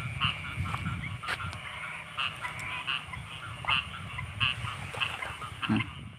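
Frogs croaking: short calls repeating irregularly, about once or twice a second, over a steady low rumble.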